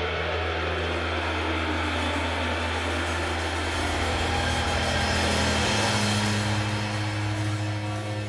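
Live band playing a droning instrumental passage: a held low bass note under a dense wash of sound, the bass stepping up in pitch about six seconds in.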